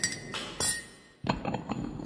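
A cup clinks with a sharp tap and a brief ringing tone, followed by a second clatter and then a few softer knocks and handling noises.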